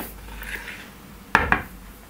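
A metal spoon stirs dry flour and wheat bran in a plastic bowl with a faint scraping rustle. About a second and a half in, the spoon gives two sharp clicks against the bowl.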